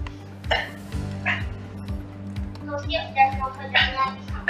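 Background music with a steady beat, with short snatches of voices over it.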